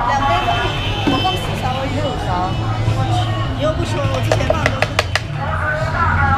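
A metal spoon clicking sharply several times in quick succession against the bowl and blender jar as yogurt is spooned over mango pieces, near the end. A steady low hum and voices run underneath.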